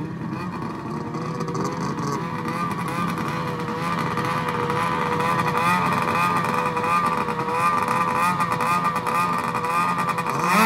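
Race snowmobile engine running on the drag-racing start line at a fast idle, its pitch wavering slightly up and down as it gets gradually louder, held before the launch.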